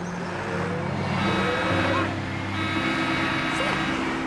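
A truck passing close by, its engine and road noise swelling to a peak about halfway through, over background music.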